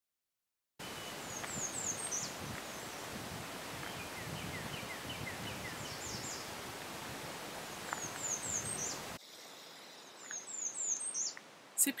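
Songbirds singing: short runs of high, quick, downward-sliding notes every few seconds over a steady rushing background noise. The sound starts a moment in after total silence, and the background drops away abruptly about nine seconds in while the birds go on.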